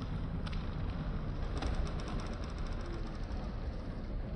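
Outdoor harbour ambience with a steady low rumble like wind buffeting the microphone. About halfway through there is a run of quick, evenly spaced light ticks lasting a little over a second.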